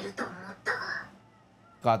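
Speech: short lines of dialogue from the anime, then a man starts talking near the end.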